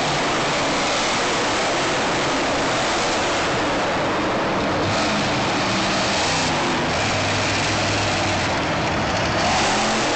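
Monster truck's supercharged V8 engine running loud and revving, heard through a phone's microphone. The revs climb near the end.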